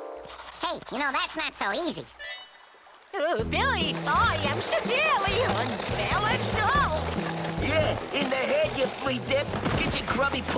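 Cartoon soundtrack: background music whose bass line comes in loudly about three seconds in, under repeated quick rising-and-falling vocal cries without clear words.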